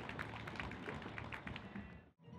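Scattered clapping from a small group of onlookers, thinning out and fading away near the end.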